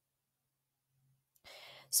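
Near silence, then a short intake of breath near the end, just before speaking.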